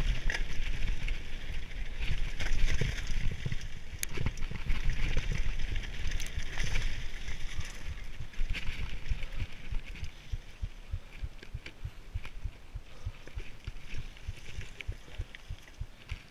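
Mountain bike riding fast down a dirt and gravel trail: tyres rolling and crunching over the surface, with clicks and knocks from the bike and heavy wind buffeting on the camera microphone. It gets quieter about ten seconds in.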